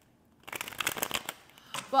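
Tarot cards being riffled by hand: a quick flurry of light card clicks starting about half a second in and lasting under a second.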